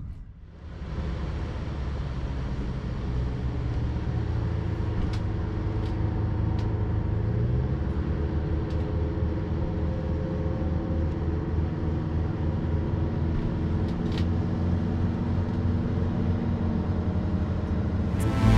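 A boat engine running with a steady low rumble, rising in over the first couple of seconds and then holding, with a few faint clicks on top.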